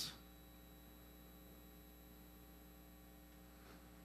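Near silence with a faint steady electrical hum.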